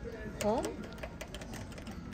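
Rapid, irregular clicking of the plastic push-buttons on an Arcade1Up Star Wars pinball cabinet as they are pressed over and over.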